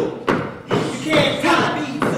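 A few thumps in quick succession, with a performer's voice sounding between them.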